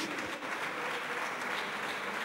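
Steady applause from a crowd of deputies in the chamber.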